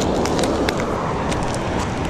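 Steady rushing of a small river waterfall, with a few light, irregular clicks over it.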